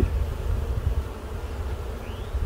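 Honeybees buzzing around an open hive, a faint steady hum over a stronger low rumble.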